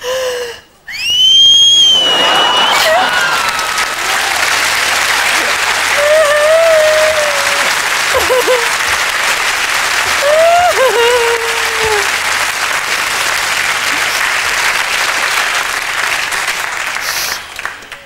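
A woman lets out a high, rising wail of exaggerated mock crying. About two seconds in, a studio audience breaks into loud applause lasting some fifteen seconds, with her sobbing wails rising over it twice.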